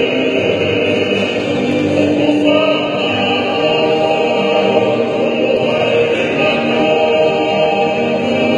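A group of men singing a Tongan hiva kakala song together, accompanied by several strummed acoustic guitars, the singing and playing running on without a break.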